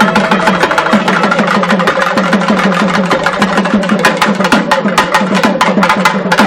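Two nadaswarams, South Indian double-reed wind instruments, playing a melody together over fast, dense strokes on thavil barrel drums.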